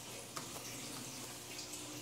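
Water running steadily through an aquaponics system's pipes and swirl filter, a faint even flowing sound with a low steady hum beneath it.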